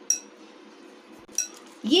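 Two light clinks of a metal spoon against a glass mixing bowl, each with a brief ring: one right at the start and one about a second and a half in.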